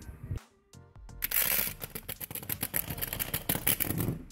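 Packing paper crackling and rustling in a dense run that starts about a second in, after a brief near-silent break, over background music.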